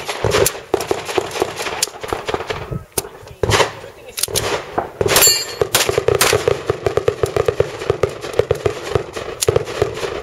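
A string of handgun shots fired at an uneven pace at steel plates on a Texas star target. The steel rings briefly after a hit about five seconds in.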